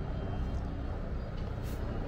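Steady low rumble of city road traffic, with one short high hiss late on.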